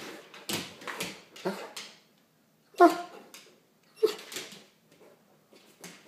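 Old English Sheepdog giving a run of short, excited barks and whines while begging for a cookie, about half a dozen separate bursts, the loudest about three seconds in, fading to softer ones near the end.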